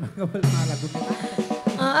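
Live band's drum kit playing a short fill, with a cymbal crash about half a second in, followed by held instrument notes.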